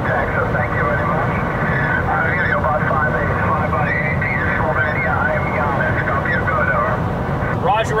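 A distant amateur radio operator's voice comes in over HF single-sideband through the Kenwood TS-480HX mobile radio's speaker. It sounds thin and telephone-like, over the steady road and engine rumble inside the truck cab. Just before the end, the driver's own voice begins.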